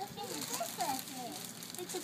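A young child's high-pitched voice speaking or vocalizing in short, rising and falling phrases that the recogniser did not catch, with faint rustling of a plastic bag underneath.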